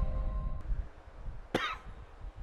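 Intro music fading out, then a single short cough about one and a half seconds in.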